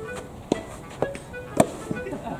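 Sharp hits of a soft tennis ball on rackets and the court during a rally, four in quick succession, the loudest about a second and a half in. Background music plays underneath.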